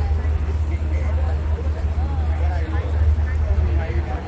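Steady low rumble of a boat under way, with the indistinct chatter of people talking on board over it.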